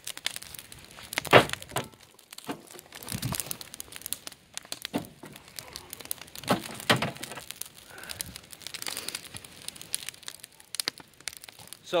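Wood fire crackling in a steel oil-drum biochar burner while a tamper is pushed down into the burning sticks several times, crunching and breaking the charred wood so the coals fall to the bottom. The first crunch, about a second in, is the loudest.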